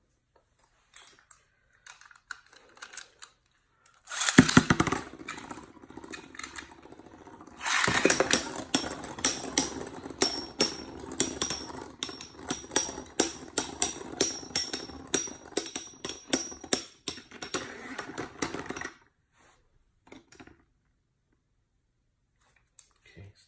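Two metal-wheeled Beyblade spinning tops whirring across a clear plastic stadium. A loud burst comes a little after four seconds in. From about eight seconds the spinning carries rapid sharp clacks, roughly two to three a second, as the tops collide, and it stops abruptly near the end.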